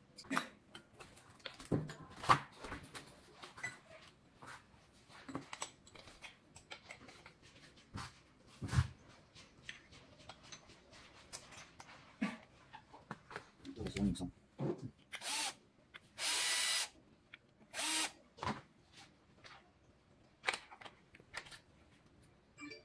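Electric screwdriver driving screws in a few short bursts, the longest nearly a second, among scattered clicks and knocks of parts and tools being handled during assembly of an electric unicycle.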